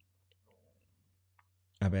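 A pause in a man's speech: near silence over a low steady hum, broken by a few faint mouth clicks, before he starts speaking again near the end.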